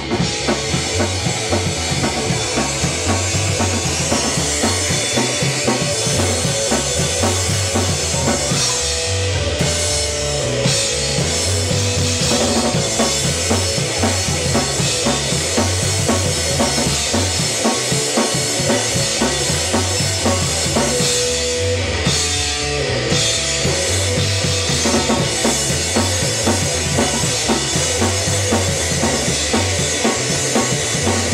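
Live rock band playing loud: electric guitar over a drum kit, with a steady kick drum and snare driving the beat.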